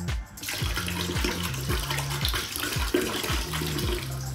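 Cola poured from a plastic bottle into a plastic bucket, a steady splashing stream that starts about half a second in. Background music with a steady beat plays underneath.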